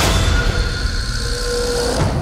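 A deep rumble with a rushing hiss, strongest at first and easing off, under a few faint held music tones.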